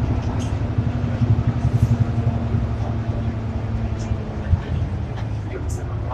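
Interior of an Ikarus 435 articulated city bus under way: its diesel engine runs with a steady low rumble and hum through the cabin, with a few light clicks near the end.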